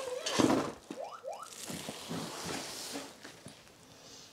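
Handling noises from a padded teleprompter carry case and its metal bracket: a louder rustle near the start, two short rising squeaks about a second in, then scattered light clicks and rustles.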